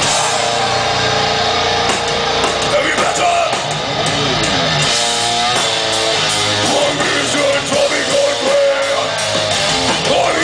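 Death metal band playing live at full volume: distorted electric guitars riffing over a drum kit, with a run of guitar notes that falls and then climbs about halfway through.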